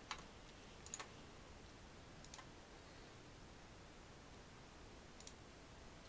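Near silence with a few faint, short computer mouse clicks: one at the start, one about a second in, one a little after two seconds and one about five seconds in.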